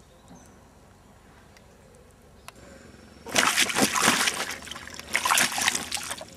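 Water splashing and sloshing as a large mirror carp moves in a water-filled retainer sling. It starts about three seconds in, in a few loud bursts.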